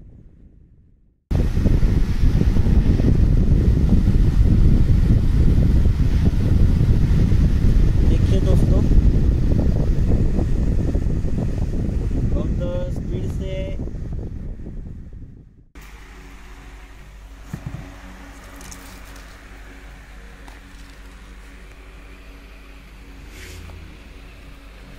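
Airflow from a solar-powered DC table fan blowing on the microphone as a loud buffeting rumble, starting suddenly about a second in and fading before cutting off about 15 seconds in. After that comes a quieter steady hum of the fan running directly off the solar panel.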